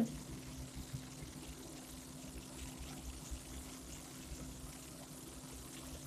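Faint steady background hum with an even low hiss, no distinct events.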